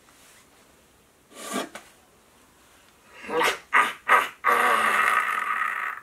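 A man's raspy villain laugh: a few short bursts, then a long drawn-out rasping hold near the end.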